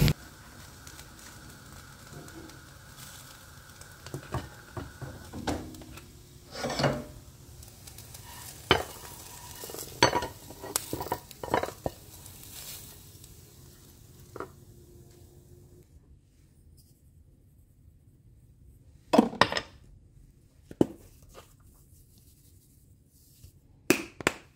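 Metal frying pan and utensil clinking and scraping as hash browns are slid out of the pan onto a ceramic plate, a string of separate knocks over a faint steady hiss that stops about two-thirds of the way in. A louder clatter comes near the three-quarter mark.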